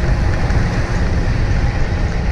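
Wind buffeting the camera microphone of a road bike moving at about 32 km/h on a windy day: a steady, loud low rumble that flutters unevenly.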